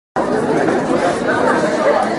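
Indistinct chatter of voices in a lecture room, with no distinct words.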